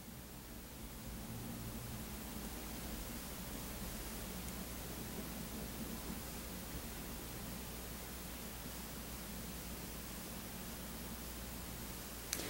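Quiet room tone: a steady, even hiss with a faint low hum.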